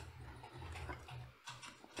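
A few faint clicks, of the kind made by working a computer, over a low steady hum of room and microphone noise.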